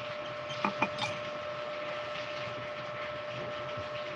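A steady electrical-sounding hum under faint room noise, with three or four short clicks and knocks about a second in from the phone being handled and moved.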